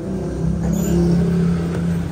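A motor vehicle's engine running close by, a steady low hum that swells about half a second in and holds.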